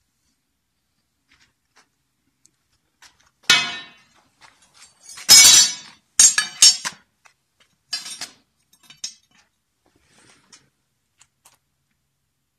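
Bent steel tube scrolls being set down on a concrete floor, clinking and clattering against the floor and each other in a handful of sharp metallic knocks, the loudest in the middle.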